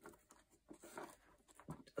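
Faint rustling and a few light clicks of small plastic bags of diamond painting drills being flipped through by hand in a storage box.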